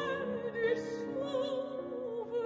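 Soprano singing a French art song with wide vibrato, with piano accompaniment. The voice glides up into a held note at the start, then moves through sustained lower phrases.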